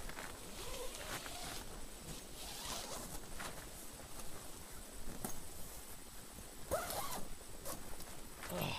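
Faint rustling and scattered light clicks, with footsteps through long grass close to the microphone in the second half.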